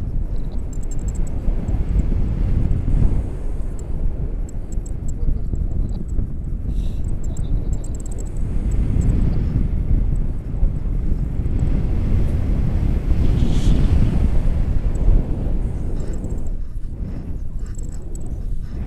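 Wind buffeting the microphone of a camera on a tandem paraglider in flight: a loud low rumbling rush that swells and eases.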